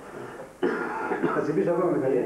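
A man clears his throat and goes on speaking, the voice starting abruptly about half a second in after a quieter moment.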